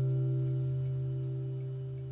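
Acoustic guitar's final chord ringing out and fading away steadily, with no new notes played.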